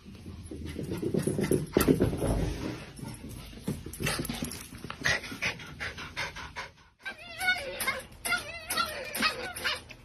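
A dog panting close by, with a low thump about two seconds in. After a sudden cut about seven seconds in, a young animal gives high, wavering whining cries.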